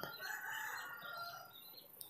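A rooster crowing faintly: one crow lasting just over a second.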